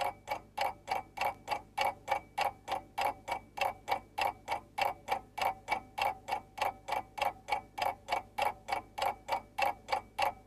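Even, rapid ticking, about four ticks a second, with a faint steady high tone beneath it.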